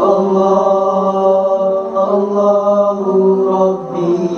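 Group of boys singing nasyid a cappella, a chant on "Allah" in long held notes that step to a new pitch every second or so.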